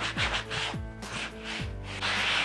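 Background music, with a cloth rubbing wax into a chalk-painted fabric chair seat underneath it.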